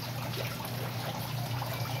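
Pumped aquaponic water flowing out of the grow pipe and splashing down into a fish pond, a steady running trickle. A steady low hum sits underneath.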